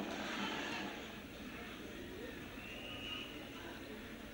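Faint murmur of a sparse stadium crowd, heard through the audio of an old television broadcast.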